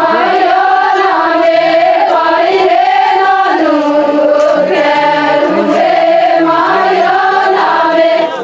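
A group of voices, mostly women, singing an Adivasi folk song together in long held melodic lines.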